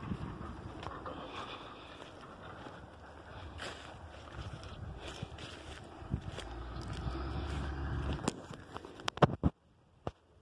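Wind buffeting a phone's microphone, with handling noise, as it is carried across open scrubland. The rumble swells for a couple of seconds past the middle, a few sharp knocks follow near the end, and then the sound cuts out suddenly.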